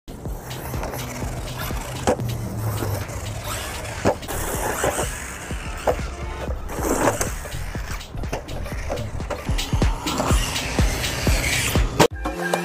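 Brushless electric RC truck running over a dirt lot: a noisy rush of motor and tyres on dirt, broken by several sharp thumps as it lands from jumps.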